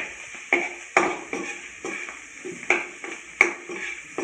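Metal ladle scraping and knocking against a wok as chopped chicken liver and gizzards are stirred, with a steady sizzle of frying underneath. The knocks come at an uneven pace, about five in all.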